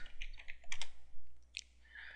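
Computer keyboard keys clicking as the word "domains" is typed into a search box. The keystrokes stop about a second and a half in.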